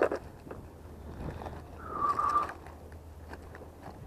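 Low wind rumble on the microphone with faint rummaging and small ticks as the angler searches his bag for pliers. A brief, thin, whistle-like tone sounds about halfway through.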